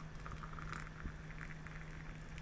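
Hot water pouring from an electric kettle into a mug over a tea bag: a faint, steady trickle and splash.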